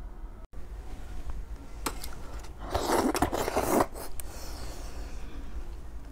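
A metal spoon scraping and clinking in a metal tray of braised pork and broth, with scattered clicks. The loudest scrape lasts about a second in the middle.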